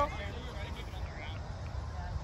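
Faint, distant voices calling out on a soccer field over a steady low rumble.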